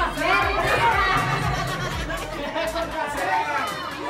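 Many people chattering and talking over each other in a crowded room, over background music with a steady beat that stops about three seconds in.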